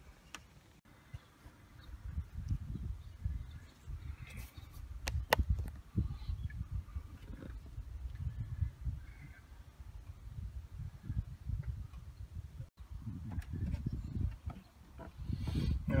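Wind buffeting the microphone as an uneven low rumble, with one sharp click about five seconds in.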